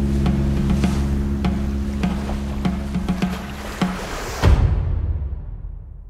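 A folk band's recording of a sea-shanty medley reaching its ending. The band holds a chord over steady beats, a bit under two a second. A final loud accented hit comes about four and a half seconds in, then the sound rings down and fades away.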